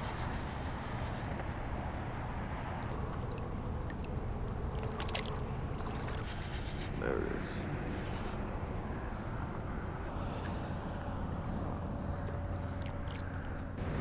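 Steady low wind and water noise around a wading angler, with a few sharp clicks about five seconds in.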